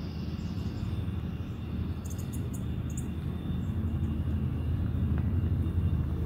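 A steady low rumble that slowly grows louder, with a few faint high chirps about two to three seconds in.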